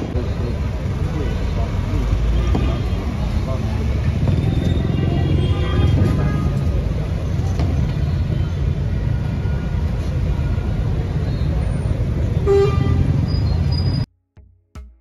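Steady low rumble of vehicle engines and street traffic, with people's voices in the background.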